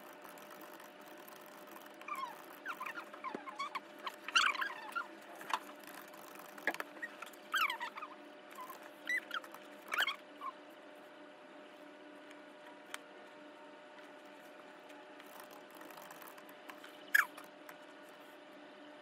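Faint room sound fast-forwarded about five times: short high squeaky chirps and a few clicks come in a cluster from about two to ten seconds in, over a steady low hum, with one louder squeak near the end.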